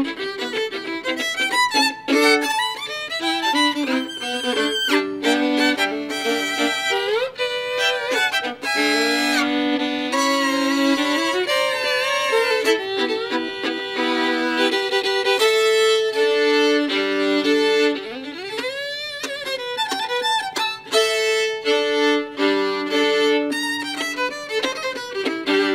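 Two fiddles playing a tune together as a duet, bowed in a fiddle style, with notes sliding up in pitch a few times.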